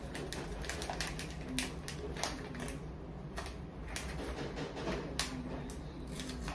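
A gauze pad and its paper wrapper being handled and folded by hand, with irregular crinkles and clicks over a low steady hum.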